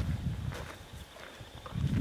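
Footsteps walking through dry grass: irregular low thumps with light rustling, loudest near the start and again near the end.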